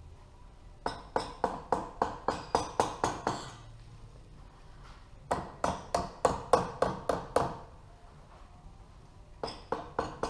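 Rubber mallet tapping lightly on the cylinder block of a Honda CBX 1000 six-cylinder engine, to break it free and work it evenly up the studs. There are two runs of quick taps at about four a second, the first starting about a second in and the second about five seconds in.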